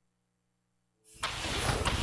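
Silence, then about a second in a loud, rumbling sound effect starts abruptly and keeps going, heavy in the low end. It is part of the show's intro sequence.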